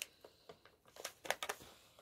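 Faint crinkling of a foil-backed plastic pouch being handled, with a few short crackles scattered through.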